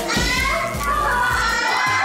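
A woman crying out 'ah, ah, ah' in strain as her leg is pressed straight in an aerial hoop stretch, with a woman's coaching voice, over background pop music with a steady beat.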